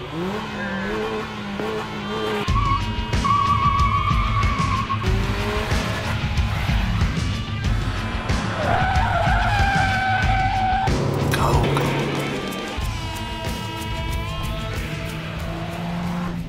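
Kia Cee'd hatchback being driven hard round a test track, its engine running at high revs and its tyres squealing through bends in several long stretches. The engine gets louder a few seconds in and eases off near the end.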